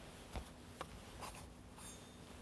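Faint handling sounds of altar vessels and linens: a soft knock about a third of a second in, a couple of lighter clicks, and a brief swish of cloth near the end as the pall is lifted from the chalice and the purificator is taken up.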